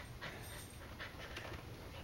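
A cocker spaniel panting faintly, a few soft breaths.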